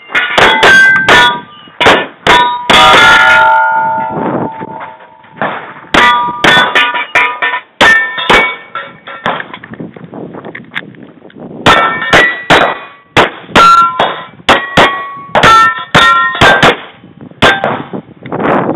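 Quick gunshots at steel targets, each hit answered by the bright ring of a steel plate, in three rapid strings with short pauses between; one plate rings on for over a second a few seconds in.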